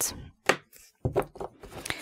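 Tarot cards being handled and laid down on a cloth-covered table: a few soft, short taps and slaps spread over two seconds.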